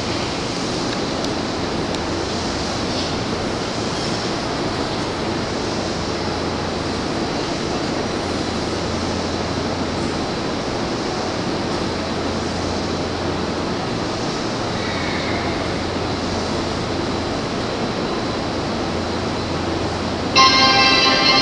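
An E257 series electric train standing idle at an underground platform: a steady, even hiss with a low hum beneath it, from the train's running equipment and the platform's ventilation.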